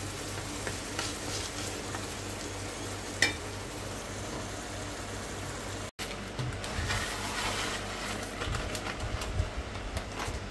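Ground meat sizzling in a nonstick frying pan while a spatula stirs it, with a sharp clink about three seconds in. After a brief break about six seconds in, the frying is louder and busier, with irregular scraping and low knocks from the stirring.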